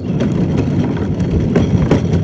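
Hard plastic wheels of a toddler's ride-on push car rolling over a concrete sidewalk: a steady rattling rumble with a sharper click about one and a half seconds in.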